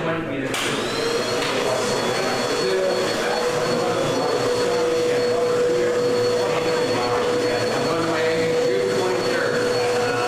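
Vacuum cleaner switched on about half a second in: its motor whine rises as it spins up, then it runs steadily with a high whine over a lower hum.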